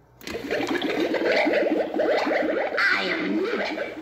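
A Gemmy animated stirring-cauldron witch prop starting its recorded soundtrack through its small built-in speaker, cutting in suddenly a moment in: a loud warbling, rapidly rippling effect like bubbling with a spooky tune behind it.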